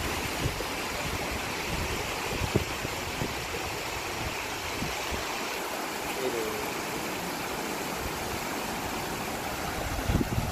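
Shallow stream water running steadily over a low concrete weir and around rocks, an even rushing hiss.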